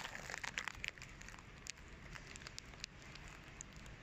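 Faint shop room tone with scattered light clicks and crackles, thickest in the first second or so.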